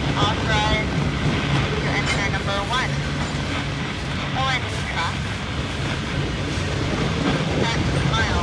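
Freight train cars rolling past at steady speed: a continuous rumble of wheels on the rails with a constant low hum.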